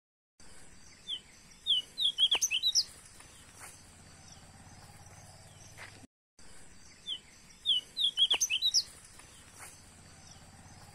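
A quick burst of bird chirps, about half a dozen short high calls in a row, over faint steady background noise. The same burst comes again after a short break, about six seconds later, as if the same recording is played twice.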